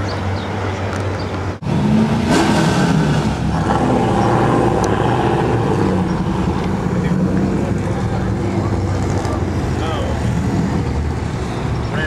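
A supercharged Chevrolet Camaro V8 running at a steady idle. The sound cuts out for an instant about one and a half seconds in, then comes back louder.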